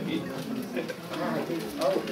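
Speech only: soft, halting male talking with short gaps.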